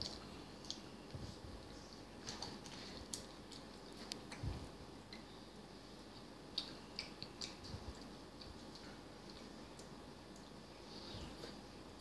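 Faint eating sounds of a child chewing noodles: scattered small clicks and soft wet smacks over quiet room tone.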